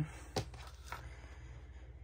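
Quiet room tone with one short, sharp click about half a second in and a fainter one about a second in, the sort of small knock made while handling things.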